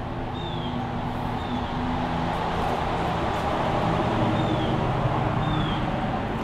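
An engine hum with a few steady low tones, growing louder over the first few seconds and then holding. A bird's short falling chirp sounds four times over it.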